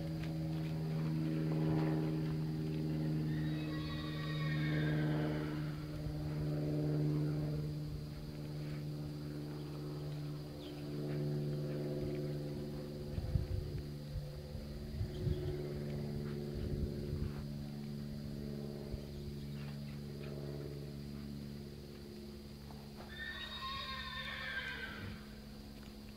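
A horse whinnies twice, once about four seconds in and again near the end. Under it runs a steady low drone of held tones, and a few hoofbeats knock in the middle.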